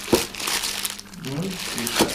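Crinkling and rustling of something being handled close to the microphone, irregular throughout, with a man speaking briefly over it.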